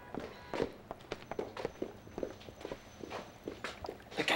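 Footsteps of two people walking briskly, an uneven patter of several short steps a second.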